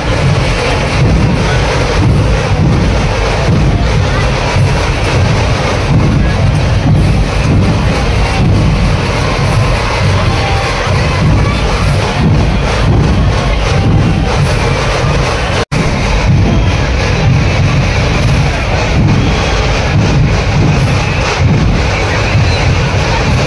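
Loud procession music with heavy low drumming, over the noise of a large crowd. The sound cuts out for an instant about two thirds of the way through.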